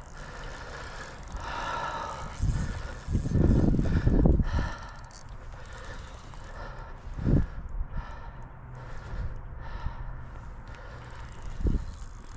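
Fishing reel being wound and rod handled while playing a hooked muskie. Low rumbling bursts come about three to four seconds in, and there is a short thump near seven seconds.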